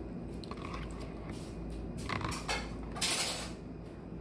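A metal spoon scraping and scooping in a plastic instant-noodle tray of noodles and broth, in several short scrapes, the loudest about three seconds in.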